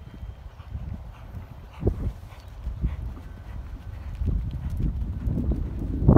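Hoofbeats of a horse cantering on dirt arena footing, dull thuds in an uneven rhythm, growing louder toward the end as it comes up to a jump.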